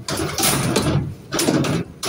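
Scrap metal being shifted about in a van's load space: two long rattling, scraping bursts, the second starting about a second and a half in.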